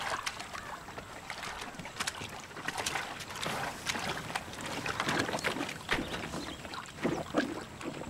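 Elephants drinking in a shallow stream: water sloshing and splashing as trunks dip into it, with an irregular run of sharp splashes and drips.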